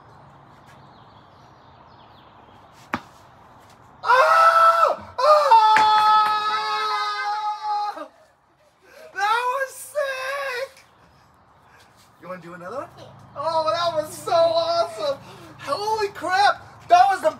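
A single sharp click, then a child's loud, long, high-pitched yell about four seconds in, a shorter cry soon after, and excited voices near the end.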